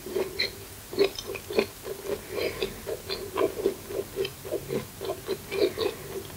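Close-miked, closed-mouth chewing of a last mouthful of McDonald's pie: soft, even chews at about three a second, with small wet clicks of the mouth.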